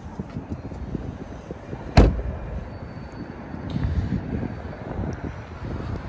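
A car door, the Volvo XC90's driver's door, shut once with a single solid thud about two seconds in, over a steady low outdoor rumble.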